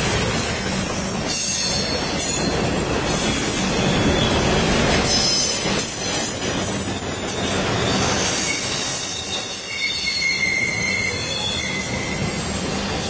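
Double-stack intermodal well cars rolling past on steel rails, a steady rumbling rush of wheels and cars. High-pitched wheel squeal comes and goes over it, about three spells of it.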